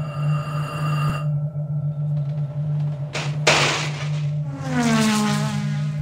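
Intro music under a logo: a steady low drone with high held tones for about the first second, a short rush of noise around three seconds in, and a pitched sweep falling steadily toward the end.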